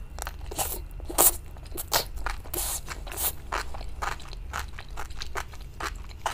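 Close-miked eating: a person biting and chewing fried enoki mushroom skewers in spicy sauce, with many short, irregular crunches and wet mouth clicks.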